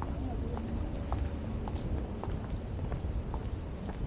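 Footsteps of someone walking on a paved path, short clicks at about two steps a second, over a steady low rumble.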